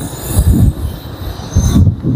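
Outdoor street noise with two surges of low rumble, about half a second in and again near the end, and a faint high hiss over it.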